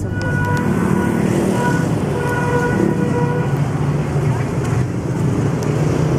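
Busy city street traffic: a steady rumble of motorbike and car engines, with a horn sounding on and off in the first half.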